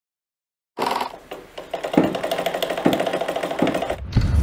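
Brand logo intro sound effect: starting about a second in, a fast, even mechanical rattle with three sharper hits a little under a second apart.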